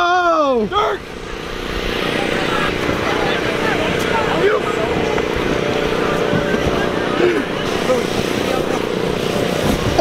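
A voice whoops, rising and falling, in the first second. Then a steady mechanical drone runs under scattered faint voices, typical of the electric air blower that keeps an inflatable game inflated.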